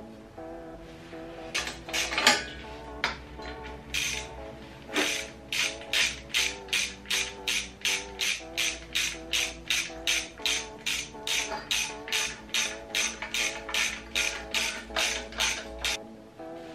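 A ratchet wrench being worked back and forth, giving an even run of ratcheting strokes about two a second from about five seconds in, with a few scattered metal knocks before it. Background music plays underneath.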